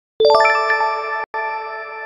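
A bright chime sound effect: a few bell-like notes struck in quick succession about a quarter second in, then ringing and slowly dying away, with a brief cut-out partway through. It marks the answer reveal.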